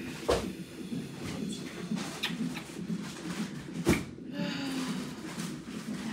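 A woman in labour moaning softly and breathing through a contraction, with no words. Two sharp knocks, a small one just after the start and a louder one near four seconds in.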